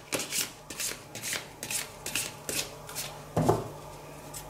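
A tarot deck being shuffled by hand: cards slapping against each other in short strokes, about three a second, with one louder knock about three and a half seconds in.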